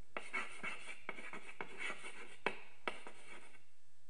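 Chalk writing on a blackboard: a run of scratchy strokes with a few sharp taps, stopping about three and a half seconds in.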